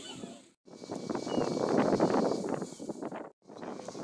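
Wind buffeting the microphone: a rough, fluctuating rush of noise, broken twice by brief dropouts where the shots change.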